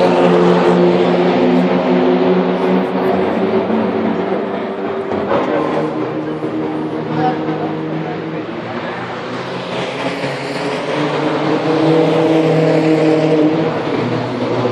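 Track-day cars driving past at speed, engines revving hard. A loud pass at the start fades through the middle, and another car's engine rises loudly about three-quarters of the way in.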